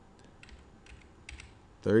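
A few faint, irregular computer keyboard key clicks as numbers are typed into an answer grid.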